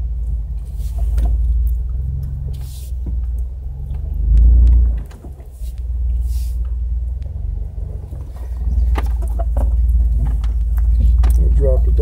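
A Jeep's engine and drivetrain rumbling low as it crawls over a rough, rutted woodland trail, with scattered knocks from the vehicle jolting over bumps. The rumble swells louder briefly about four and a half seconds in, then drops for a moment.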